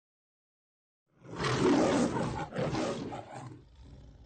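A lion roaring, two roars in quick succession starting about a second in, the second trailing off.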